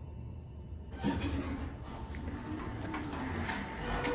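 Schindler 330A elevator's centre-opening doors sliding open, starting about a second in as a rushing noise with scattered knocks.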